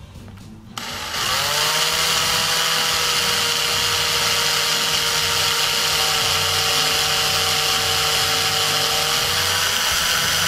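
Small electric drill starting about a second in, its whine rising as the motor spins up and then running steadily as the bit bores a hole into the flocked diorama base.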